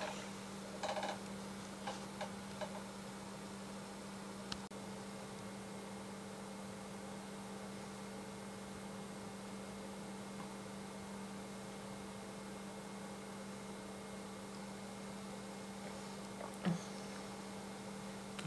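A steady low electrical hum under quiet room tone, with a few faint brief sounds about a second in and again near the end.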